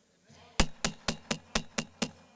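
A run of sharp, evenly spaced knocks, about four a second, starting about half a second in.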